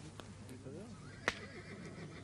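A faint horse whinnying in the background, a wavering call, with a sharp click about a second and a quarter in.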